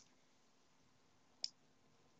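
Near silence with one short, sharp click about one and a half seconds in.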